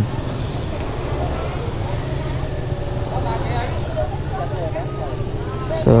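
Motor scooter engine running at low speed, a steady low rumble, with faint voices of people around.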